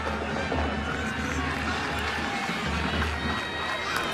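Music playing over the PA or band in a football stadium, over the steady noise of the crowd in the stands.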